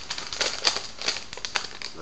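Plastic wrapper of a baseball card pack crinkling as it is torn open by hand, a run of irregular sharp crackles.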